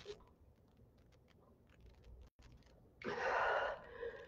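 A few faint ticks, then about three seconds in a short, breathy exhale of under a second: a woman sighing as she catches her breath between exercises.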